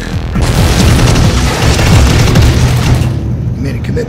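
A loud boom: a rushing, noisy blast lasting about two and a half seconds that fades away, laid over music.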